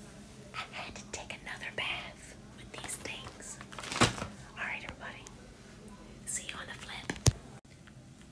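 A woman whispering in a small room, with two sharp knocks: one about four seconds in and one near the end.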